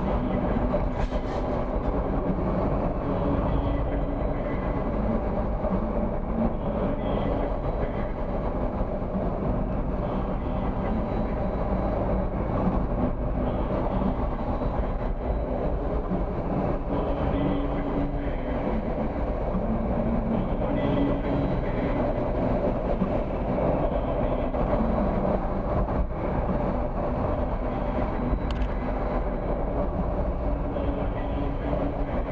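Steady engine hum and tyre noise of a car driving along a road, heard from inside the cabin.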